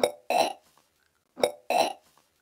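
A woman gagging on a mouthful of edible chalk: two dry heaves about a second and a half apart, each a short catch in the throat followed by a louder voiced retch, her body rejecting the chalk.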